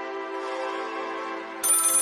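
Music with held notes, then about one and a half seconds in a telephone starts ringing, high-pitched and rapidly pulsing.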